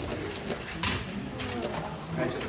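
Low, indistinct murmuring voices of a few people talking, with two sharp clicks, one at the start and one a little under a second in.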